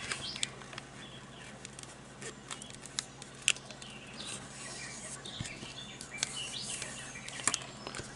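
A sheet of paper being folded and creased by hand on a cutting mat: faint rustling with scattered small crackles and ticks.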